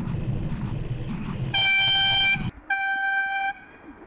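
A horn sounded twice in one steady pitch: a blast of about a second, then a brief gap and a slightly shorter second blast. Before the horn there is low wind and road rumble from riding, which drops away as the first blast ends.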